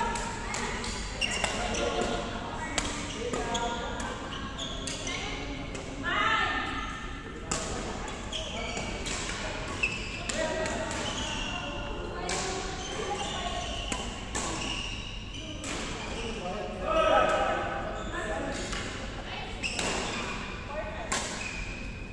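Badminton being played in a large gym: sharp racket strikes on the shuttlecock at irregular intervals, with people talking around the courts throughout.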